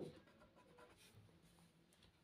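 Faint scratching of a pen writing numbers on paper.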